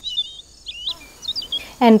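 Small birds chirping: three short bursts of high, wavering calls in the first second and a half. Speech begins near the end.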